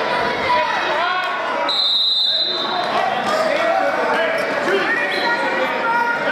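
Voices of coaches and spectators calling out, echoing in a gymnasium, with a low thump at the start. About two seconds in there is one short, high whistle blast from the referee.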